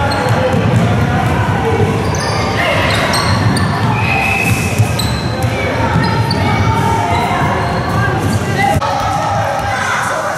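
Basketballs bouncing on an indoor court floor, echoing in a large sports hall, over a steady hubbub of young players' voices and short high squeaks.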